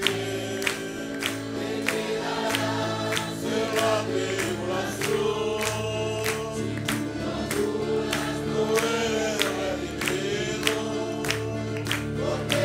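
A congregation singing a Spanish-language hymn together, with instrumental accompaniment: steady bass notes and an even beat of sharp strokes.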